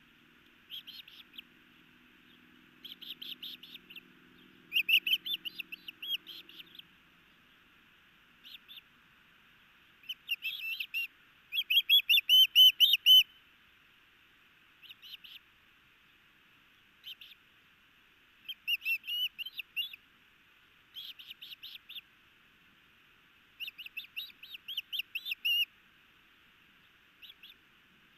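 Osprey calling at the nest during a feeding: about a dozen bursts of rapid, short, high chirps, each run lasting a second or two, loudest near the middle. A faint low hum sits under the first few seconds.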